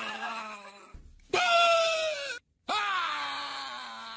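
A woman screaming in fright: three long high cries, each sliding down in pitch, with a brief break between the first and second.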